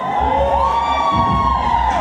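Siren sound effect in a hip-hop dance track: several overlapping tones rise, hold and fall over about two seconds, over a heavy bass beat.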